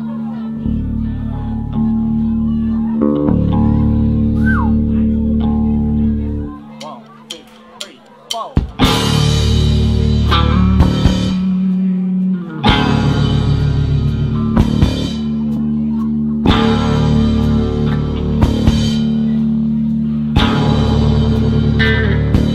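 Live band starting a song on bass, electric guitar and drum kit: held bass and guitar notes for about six seconds, a brief drop, then the drums and cymbals come in and the full band plays an instrumental intro in repeating phrases.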